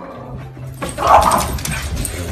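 A dog gives one short bark about a second in.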